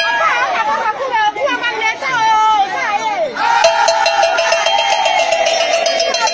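A crowd of women chanting and calling out together, with many voices overlapping. From about three and a half seconds in, one long held call rises above the rest and lasts until near the end.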